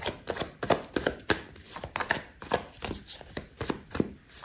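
A deck of tarot cards being shuffled by hand: a quick, irregular run of card clicks and slaps, several a second.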